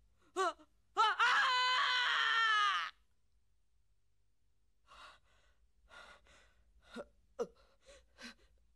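A character's voice from an anime film soundtrack: a short gasp, then a loud cry held about two seconds with its pitch sinking slightly, and after a pause a string of ragged gasping breaths.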